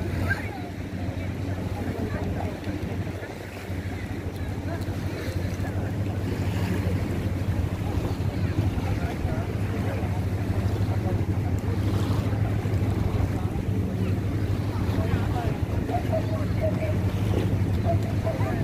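Lakeshore ambience: wind on the microphone and small waves lapping at the shore, over a steady low hum, with faint voices of people on the beach.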